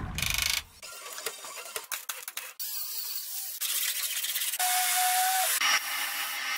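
Short clips of auto body-shop work sounds cut together, each breaking off abruptly: a run of sharp clicks and knocks, then steady hissing, with a steady high tone a little before the end. It ends on the hiss of a paint spray gun.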